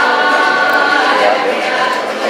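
Background music of held, choir-like sung notes, steady and fairly loud.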